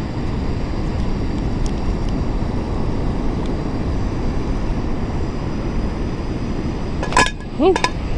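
Steady low rumbling background noise, beach wind and surf on an open microphone. A short voiced exclamation comes near the end.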